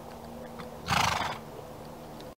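A horse snorting once: a short, noisy blow through the nostrils about a second in, lasting about half a second.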